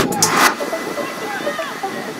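A music track with a sharp beat cuts off about half a second in. Live outdoor soccer-field sound follows: distant players' shouts and calls over a steady hiss.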